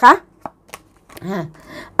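A tarot card being drawn from the deck and laid on a cloth-covered table: a couple of faint clicks, then a short soft sliding rustle near the end.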